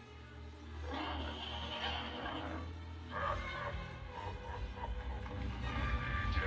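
A film soundtrack played through a television speaker and picked up in the room: music mixed with creature sound effects, over a steady low hum.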